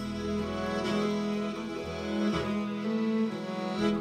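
Instrumental background music: slow, sustained melodic notes.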